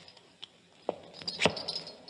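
Radio-drama sound effect of slow, uneven steps or knocks with a faint metallic jingle: three in all, the last about halfway through and the loudest.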